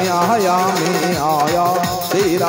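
Devotional bhajan music: a Casio keyboard plays a held, ornamented melody that bends up and down in pitch over a steady electronic dholak beat.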